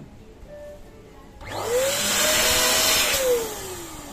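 Electric balloon pump inflating a balloon. Its motor starts about one and a half seconds in, runs for nearly two seconds with a rising whine, then falls in pitch as it winds down when switched off.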